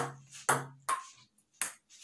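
Ping pong ball bouncing on a wooden dining table and struck by paddles in a slow rally: four sharp clicks.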